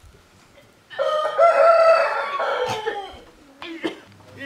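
A rooster crowing once, a loud call of about two seconds that starts about a second in and drops in pitch at its end.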